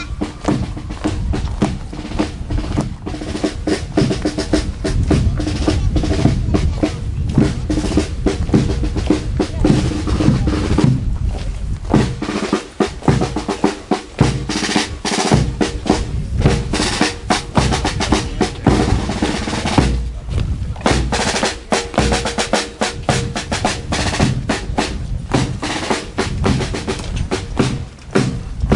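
Marching band's drum section playing a march cadence: rapid snare drum strokes and rolls over bass drum beats, loud and steady, with some held brass notes at times.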